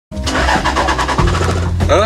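Vehicle engine idling with a steady low hum that sets in about a second in, under voices and music.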